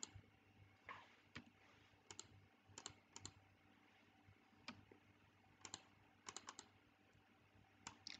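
Faint, scattered clicking of a computer mouse and keyboard, several clicks coming in quick pairs.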